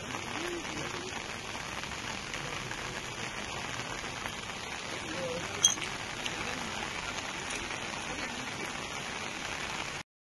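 Steady hiss of heavy rain falling, with one sharp click a little past halfway.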